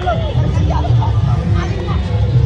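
Several young men shouting and talking over one another in excited babble, over a steady low rumble.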